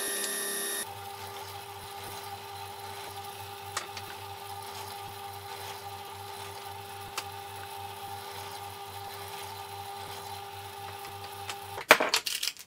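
A table saw running for about the first second, then a drill press motor running steadily with a faint regular pulse as it bores into a small board. A few sharp clacks right at the end.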